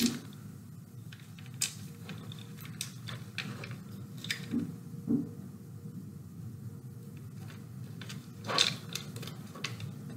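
Hands working a bead onto dreamcatcher thread: scattered small clicks and rustles over a steady low room hum.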